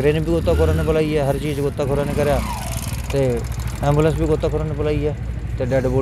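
A man speaking into a microphone in the open, over a steady low rumble.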